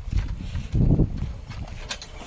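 A pair of bullocks hauling a cart on a dirt track: irregular hoof falls with the cart's wheels and wooden frame rumbling and rattling, loudest just before the middle, with a few sharp clicks near the end.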